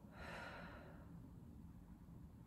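A woman's soft exhale lasting under a second near the start, breathing out through a seated rotation stretch, then faint room hum.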